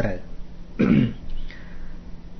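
A man's voice in a pause between spoken phrases: about a second in, a brief throat-clearing sound falling in pitch.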